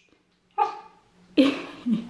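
A small spitz-type dog gives one short bark about half a second in, followed by a woman laughing.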